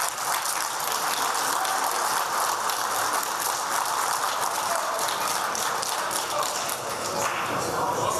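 A group of people applauding steadily, with voices mixed in.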